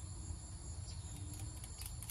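Crickets chirping steadily in the evening background, with a few faint clicks as a small plug is handled and fitted into a billet aluminium oil catch can.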